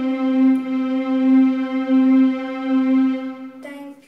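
Yamaha electronic keyboard playing Carnatic music: one long held note, wavering a little in loudness. Just before the end it changes to a short, slightly lower note that soon dies away as the piece closes.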